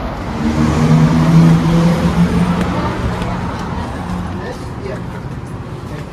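A motor vehicle's engine passing close by: a steady low hum that swells to its loudest about a second and a half in, then fades away.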